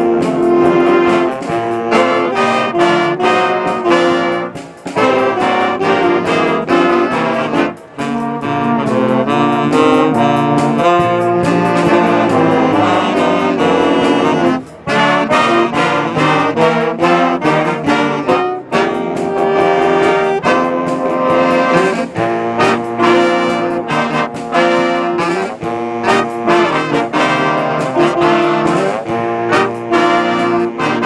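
Jazz big band playing, with trumpets, trombones and saxophones sounding together in full ensemble. The band cuts off briefly about five, eight and fifteen seconds in.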